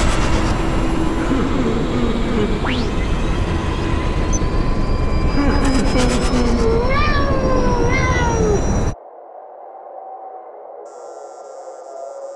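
A cat meowing and a man crying out over a loud, steady rumbling noise. About nine seconds in, the rumble and cries cut off suddenly, leaving only a faint hum.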